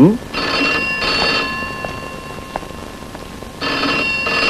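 Desk telephone ringing: two rings of about a second each, roughly three seconds apart.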